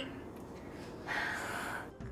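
A woman's audible breath out, a single breathy exhale about a second in that lasts just under a second.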